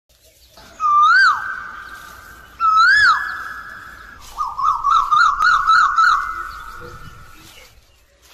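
A bird-like whistled call sound effect with echo. Two loud calls each rise and then fall, ringing on afterwards, then a rapid warbling trill follows and fades away.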